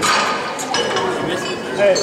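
Barbell weight plates clinking as the bar is loaded for the next attempt, with indistinct voices around.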